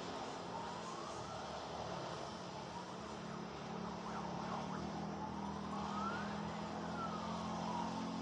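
Steady road-traffic noise with an emergency-vehicle siren wailing: its pitch rises and falls slowly, with a couple of quick yelps about halfway through.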